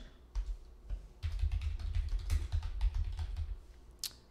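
Typing on a computer keyboard: a quick run of key clicks, thickest from about a second in until just before the end, with dull low thuds beneath them.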